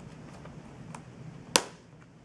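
Tabs of an mCover hard plastic shell case unclicking from a white MacBook's lid edge: two faint clicks, then one sharp snap about one and a half seconds in.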